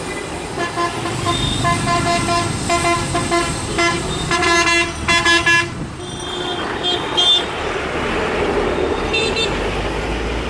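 Busy city traffic with vehicle horns honking over the steady rumble of bus and car engines. A long run of short, repeated horn toots lasts until about six seconds in, followed by a few higher-pitched beeps around seven seconds and again near the end.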